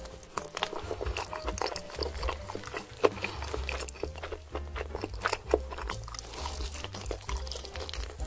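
Close-miked eating sounds of roast chicken: wet chewing, lip smacking and sucking at the fingers, a rapid string of sharp clicks and smacks with one louder smack about three seconds in. Background music runs underneath.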